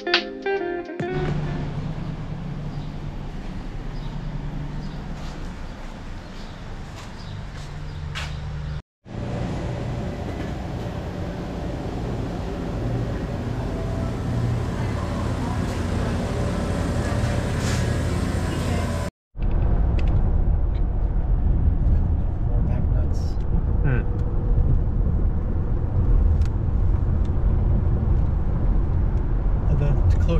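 Steady car noise recorded from inside a moving car, with wind on the microphone. After a sudden cut comes the steady hum of a grocery store with refrigerated cases. After a second cut, about two-thirds of the way in, comes louder, deeper road and wind noise from inside a car at highway speed.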